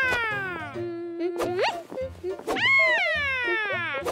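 A cartoon character's voice makes two long falling vocal glides, each sliding down from a high pitch, the first ending in a short held low note, over a light background music track.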